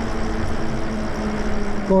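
Lyric Graffiti e-bike riding along a street: a steady low motor hum under wind and road noise on the handlebar-mounted microphone.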